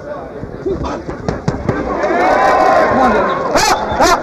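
Boxing gloves smacking in a close exchange of punches: several sharp smacks, the two loudest near the end. Under them is a crowd shouting, which swells in the middle.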